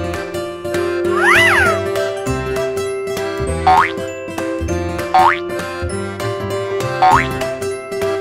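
Background music with a steady beat and held notes. About a second in there is a pitch glide that rises and falls, and in the second half three short rising whoops come roughly every one and a half to two seconds.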